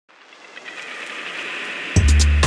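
Intro sound effect: a hissing noise swell that grows steadily louder for about two seconds and ends in a sudden deep bass hit, where electronic intro music begins.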